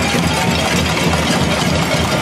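A crowd banging pots and pans at a cacerolazo, a dense, continuous clatter of metal on metal with no single strike standing out.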